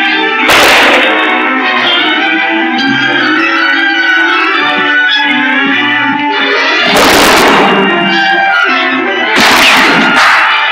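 Tense orchestral film score, with three gunshots cracking out over it: about half a second in, about seven seconds in, and near the end.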